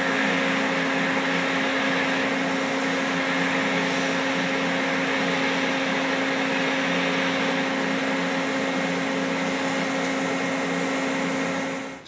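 TIG welding arc from a gas-cooled micro torch on an Everlast PowerTIG 255 EXT welder, laying a bead inside a tight steel angle. It is a steady hum with a hiss, held evenly, and it cuts off near the end when the arc is stopped.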